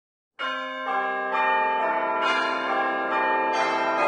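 Bells chiming a short phrase, about seven strikes roughly half a second apart, each note ringing on over the ones before.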